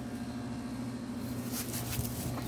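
A machine's steady low hum, with a brief rustle near the end as a plush toy is grabbed off the grass.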